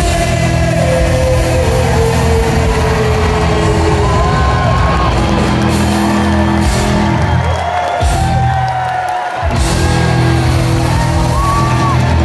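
Rock band playing live through a PA in a large hall: distorted electric guitars, bass and drums with voices singing over them. The bass and drums drop out for about a second and a half past the middle, then the full band crashes back in.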